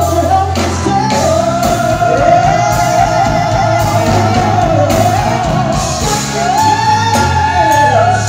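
Live soul band playing, with a lead singer holding long notes that slide up and down over bass, keyboards and drums.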